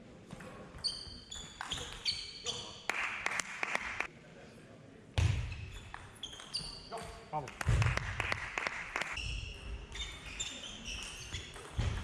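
Table tennis rally: the celluloid-type ball clicking off the rackets and bouncing on the table in quick, uneven succession, with a few heavier thumps among the strokes.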